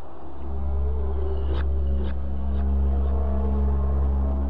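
Intro music in a cinematic sound-design style: a deep, loud rumbling drone under several held tones, with three sharp metallic hits about half a second apart near the middle.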